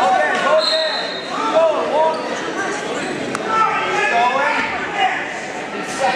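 People yelling encouragement in a large echoing gym hall, voices rising and overlapping, loudest in the first second and again past the middle.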